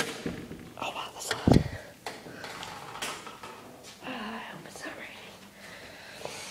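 A door pushed open, with one heavy thud about one and a half seconds in and clicks and rustling from the phone being handled around it. A voice murmurs quietly near the middle.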